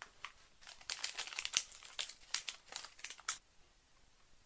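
Small shiny plastic component bag crinkling and crackling as it is handled and opened by hand, in a quick irregular run of crackles that stops shortly before the end.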